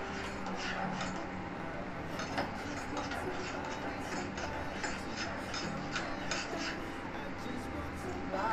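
A metal spoon stirring and tapping in a stainless-steel Turkish coffee pot (cezve) of coffee heating on an induction cooktop: light, scattered clinks and scrapes over a steady low hum.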